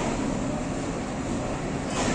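Pakistan Railways ZCU-20 diesel-electric locomotive and its train rolling slowly into a station platform, a steady rumble.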